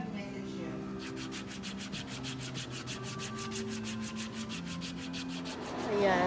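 Wooden paddle foot file rasping thick calluses off a heel in quick, even back-and-forth strokes, several a second; the strokes pause briefly at the start and resume about a second in. Music plays underneath.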